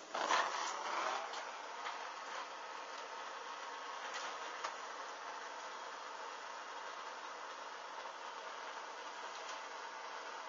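Steady hiss of a handheld gas blowtorch flame, with a louder rush just after the start.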